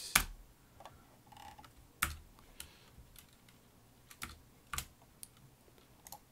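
Scattered clicks of a computer keyboard and mouse: about half a dozen separate key presses and button clicks, a second or more apart.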